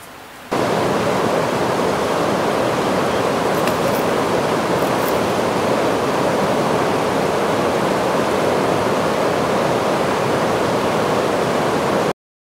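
River rapids rushing: a steady, dense sound of white water that starts suddenly about half a second in and stops abruptly at the end.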